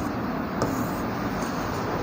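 Steady rushing background noise with a faint short tap about half a second in.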